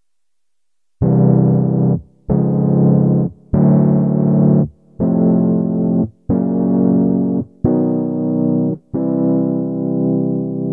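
Major chords played on Ableton Push 2 pads in chromatic note mode, triggering a software instrument: starting about a second in, seven chords of about a second each with short gaps between, the same chord shape moved across the pads so each is a different major chord. The last chord is held longer.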